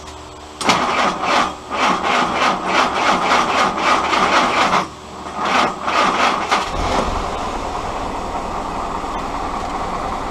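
Willys L134 Go Devil four-cylinder flathead engine being cranked by its starter in a steady beat of about three a second. The cranking breaks off briefly, resumes, and the engine catches about seven seconds in and settles into a steady idle.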